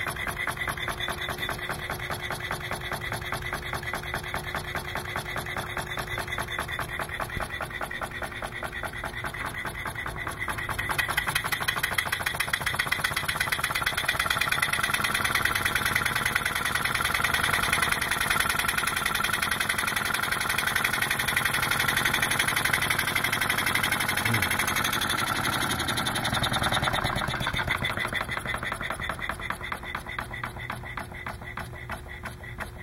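Homemade single-cylinder, single-acting pneumatic piston engine running smoothly on compressed air, a rapid, even mechanical beat with each stroke. It grows louder about a third of the way in.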